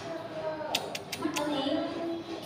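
Young children's voices murmuring quietly, with a quick run of five sharp clicks about a second in.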